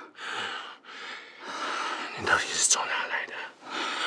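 Men breathing heavily in a run of breathy gasps, about one a second, with a brief low voiced moan about halfway through.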